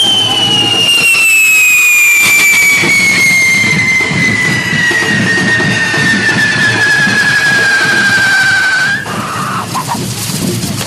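Correfoc spark fireworks (carretilles) on devils' sticks, spraying with a loud whistle that slides slowly down in pitch for about nine seconds and then cuts off suddenly. A steady rushing hiss runs underneath.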